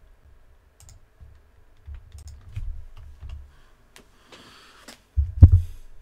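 Typing on a computer keyboard: scattered key clicks, then a brief rustle and a single dull thump near the end, the loudest sound in the stretch.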